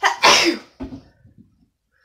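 A woman sneezing once, loudly and abruptly, followed by a few short, quieter breaths: an allergy sneeze.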